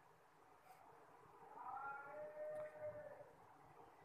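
A faint, drawn-out animal call that rises and falls in pitch from about a second and a half in, then ends on a held lower note just before three seconds.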